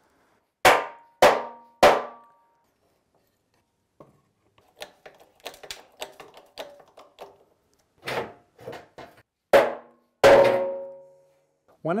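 Mallet blows on a steel truck-frame crossmember that is being knocked into place. Three strikes come about half a second apart, each ringing briefly, then a stretch of light clicks and knocks, then four more strikes, the last ringing out longest.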